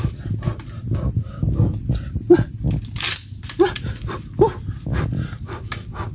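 Rotting mangrove wood being pried and torn apart by hand, with repeated cracking and splintering and a sharp snap about three seconds in. A few short yelps cut through, the loudest sounds here.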